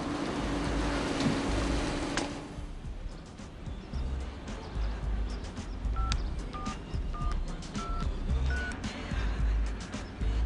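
Mobile phone keypad tones: five short two-note beeps, roughly one every two-thirds of a second, as a number is dialled, over background music.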